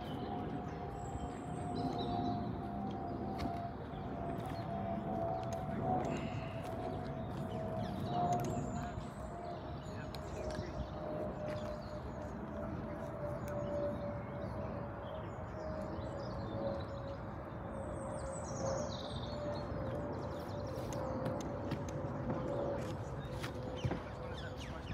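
Outdoor ambience: a steady drone that slowly sinks in pitch over a low rumble, with birds chirping now and then.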